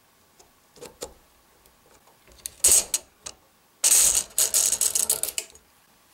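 AR-15 buffer and buffer spring being drawn out of the metal receiver extension. A few light clicks, then metallic scraping and rattling as the spring slides along the inside of the tube, longest and loudest in the second half.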